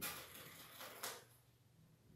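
Faint rustling of paper cut-out puppets on sticks being handled, in two brief bursts about a second apart.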